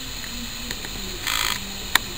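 Handheld camera handling noise over a steady outdoor hiss: a brief rustle about a second and a half in, then a single sharp click near the end as the picture goes out of focus.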